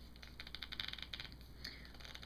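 Faint, fast scratchy rustling of a small cosmetics box being handled as a MAC Fluidline gel liner is taken out of its cardboard sleeve, dying down about a second and a half in.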